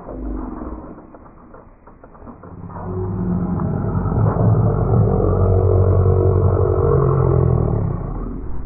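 A steady, loud, low engine-like hum builds up from about two and a half seconds in and holds to the end.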